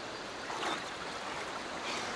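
River water running over and below a weir: a steady rush of flowing water.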